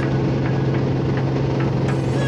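Single-engine Beechcraft A36 Bonanza's piston engine and propeller in flight, heard inside the cabin as a steady, even drone.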